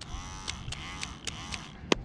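Cordless electric hair clipper running with a steady buzz, then a single hand clap just before the end.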